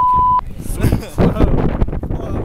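A single loud, steady high beep lasting about half a second at the very start: a censor bleep dubbed over a spoken word.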